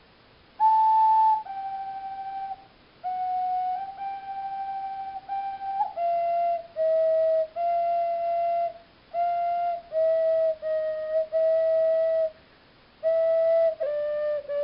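Ocarina playing a slow melody of single held notes, one pure tone at a time. The melody begins about half a second in with its loudest note and drifts mostly downward in pitch, with short breaks between phrases.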